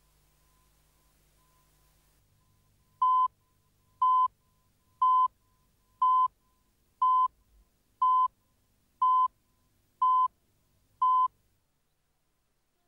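Countdown leader beeps: nine short beeps of one steady pitch, one per second, starting about three seconds in.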